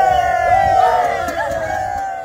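A group of men shouting and cheering together, many voices overlapping: a rugby team celebrating a victory. The voices begin to fade near the end.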